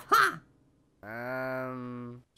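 A cartoon character's voice giving a low, flat, drawn-out groan of about a second, starting halfway in, after the last of a laugh dies away at the very start.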